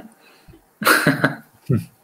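A man's short, breathy vocal outburst just under a second in, followed by a brief low voiced sound near the end.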